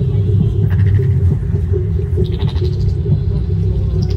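Loud, busy event din: a steady low rumble and hum, with short rattling, buzzing bursts twice.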